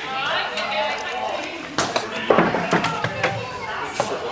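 Voices talking, broken by a few sharp knocks about two, three and three and a half seconds in.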